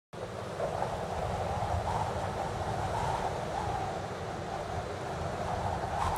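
Wind blowing steadily across a camcorder microphone: a continuous rushing noise with a low rumble underneath.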